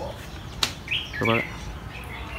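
A bird chirps briefly, a short high call about a second in, over garden background sound. A sharp click comes just before it, and a brief low voiced sound just after.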